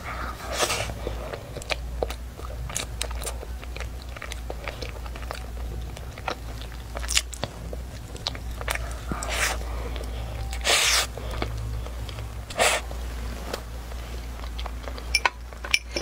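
Close-miked biting and chewing of a flaky egg-yolk pastry, with many small crackles from the pastry layers. A few short louder bursts stand out, the loudest about eleven seconds in.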